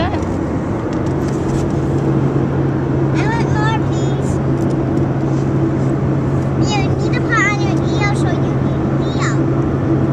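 Steady road and engine drone inside a moving car's cabin, with a low hum throughout. A small child's high-pitched voice calls out several times, around three seconds in and again around seven to nine seconds.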